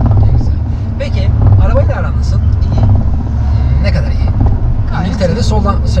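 Car cabin noise: a steady low rumble of the engine and tyres heard inside a moving car, under talking.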